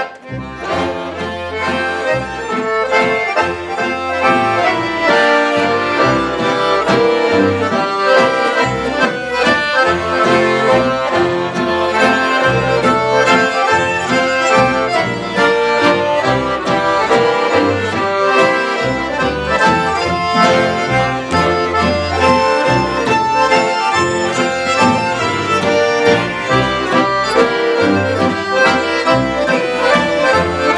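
A folk ensemble of two accordions, fiddle, guitar and double bass playing a hambo. The accordions lead, over a pulsing bass, and the tune swells in during the first second.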